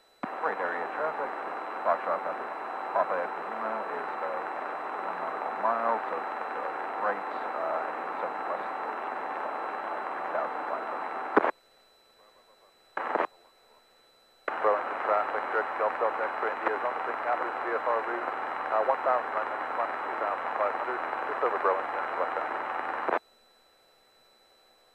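Aircraft VHF com radio transmissions heard through the intercom: two long stretches of thin, narrow-band radio voice, each switching on and cutting off abruptly, with a short blip between them and near silence in the gaps.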